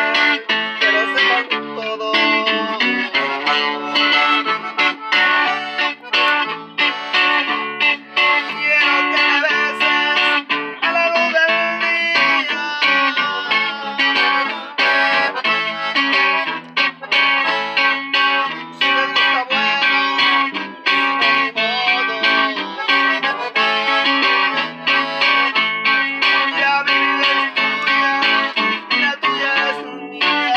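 Live instrumental passage on piano accordion, acoustic guitar and an electric guitar played through a small amplifier, with no singing.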